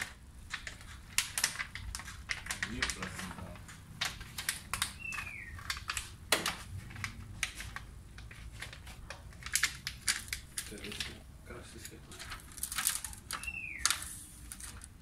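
Irregular crackles and clicks of plastic window-tint film being handled and pressed onto a car door window's glass by hand. A short falling chirp sounds twice, about five seconds in and near the end.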